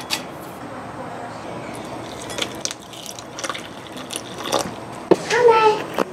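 Milk being poured into a ceramic cereal bowl, a steady soft pouring sound with a few light clicks. A child's voice comes in near the end.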